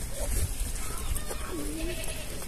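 Faint, distant bleats of farm goats: a short call early on and two brief wavering calls near the end, over a low background rumble.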